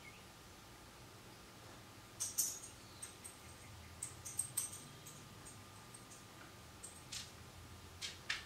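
Liquid lipstick being applied to the lips with a doe-foot applicator: faint, scattered small clicks and wet mouth sounds, in clusters about two seconds in, around four to five seconds, and again near the end.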